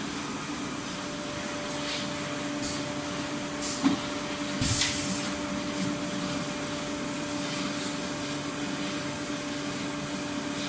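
Steady mechanical hum of an automatic inline piston filling machine running, with a sharp click about four seconds in and a short hiss just after.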